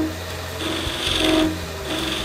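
Point of a skew chisel scraping into the centre of a spinning wood-and-resin blank on a lathe, a scratchy cutting sound over the lathe's steady hum. The cut starts about half a second in and goes on until near the end.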